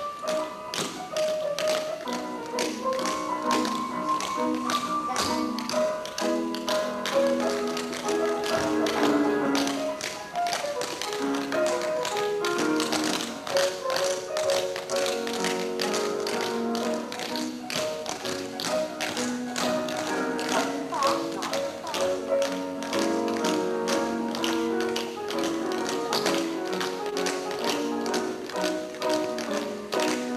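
Children's tap shoes striking the stage floor in quick, dense runs of taps, in step with music that carries a melody.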